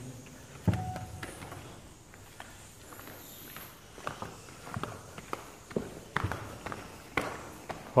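Footsteps of people in flip-flops on wooden boards and cave rock: scattered, irregular clicks and knocks.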